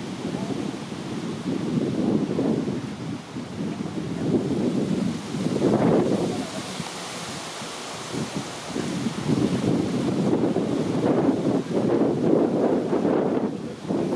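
Wind buffeting the microphone: a low, rough rumble that swells and eases in gusts.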